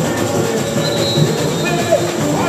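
Live samba music: a samba school's drum section playing with a chorus singing over it, and a brief high held tone about a second in.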